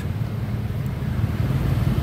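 Small motorcycle engines running close by, a steady low engine sound with road noise over it.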